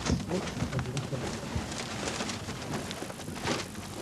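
Crackling rustle of paper letters being shuffled and pushed aside by hand inside a large trunk.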